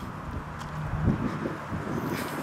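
Wind rumbling on the camera's microphone, with a soft bump about a second in.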